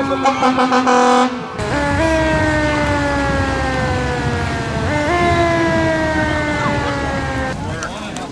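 Fire-apparatus siren wailing. The tone falls and pulses rapidly for the first second or so and breaks off suddenly. Then come two long cycles, each rising quickly and falling slowly.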